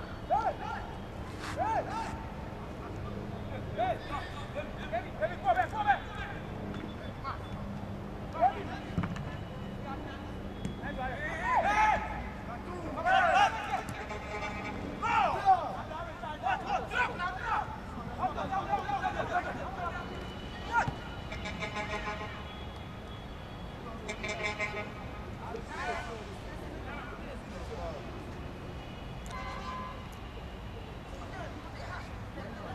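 Shouts and calls of football players carrying across an open pitch, loudest around the middle, with a few sharp knocks and a steady low hum of outdoor background noise beneath.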